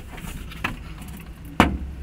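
A sheet of drywall being set against wooden wall studs: a light knock about a third of the way in, then a loud thud near the end as the board meets the framing. A low steady hum runs underneath.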